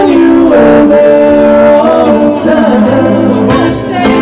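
Acoustic duo performing a rock ballad: male voices singing together over acoustic guitar.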